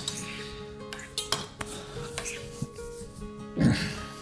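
A few light clicks and clinks of cutlery handled on a kitchen counter, over soft background music. A brief vocal sound comes near the end.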